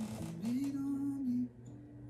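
Recorded pop song playing: a male singer glides up to a held note, then drops to softer notes over a steady low accompaniment.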